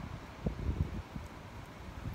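Wind rumbling on the microphone, with a few short, soft low bumps about half a second to a second in.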